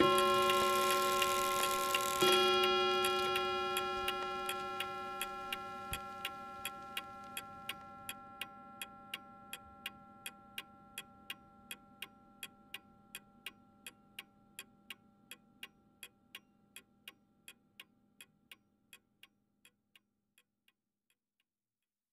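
A clock ticking evenly, about two and a half ticks a second, under a held ringing chord that is struck again about two seconds in and slowly dies away. The ticking fades and stops near the end.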